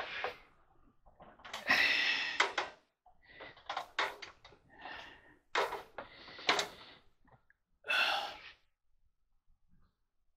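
Handling and rustling noise from a camera on a tripod being picked up, carried and set down, in about five short bursts, then quiet for the last second or so.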